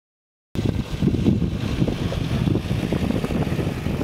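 Wind buffeting the microphone, an irregular low rumble with no steady pitch, starting about half a second in.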